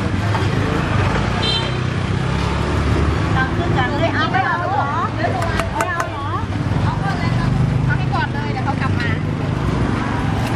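Street ambience: a steady low rumble of passing traffic and engines, with people talking in the middle and again near the end, and a few sharp clicks about six seconds in.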